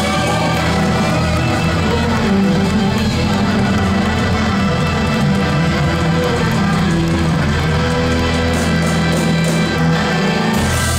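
Live blues-rock band playing a loud instrumental passage: electric guitar over drums and bass guitar, with no singing.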